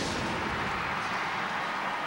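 Television broadcast transition sound effect: a steady whooshing rush of noise that accompanies the animated graphic wipe into a replay, beginning to fade near the end.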